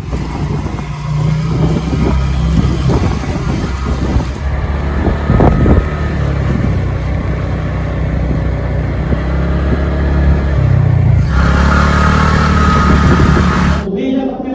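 Motor scooter running along a road with two riders aboard, its engine and road noise steady and loud. The sound turns brighter and fuller about eleven seconds in.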